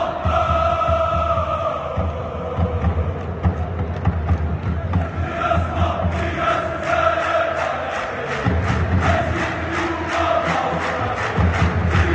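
A large crowd of football supporters chanting in unison, many voices holding a sung tune. About five seconds in, a steady beat of about two strokes a second joins the chant.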